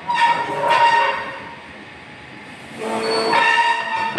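Horn blasts, each a chord of several steady tones held for about a second: one at the start and another starting near three seconds in.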